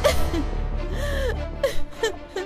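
A woman sobbing: a sharp gasp, then a few short wavering cries, over low background music.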